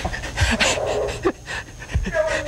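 A man's breathless, wheezing laughter: a few short gasping bursts of breath.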